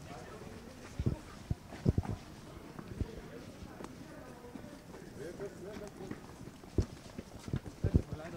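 Irregular footsteps on brick paving as people walk briskly, with scattered sharp knocks and thumps, and faint voices in the background.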